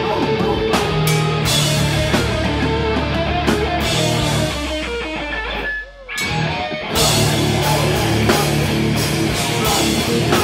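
Death metal band playing live: distorted electric guitars, bass and drum kit at full volume. About six seconds in the band drops out briefly, leaving a low note that fades, then crashes back in.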